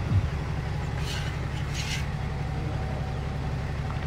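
A steady low rumble, with two brief soft hisses about one and two seconds in.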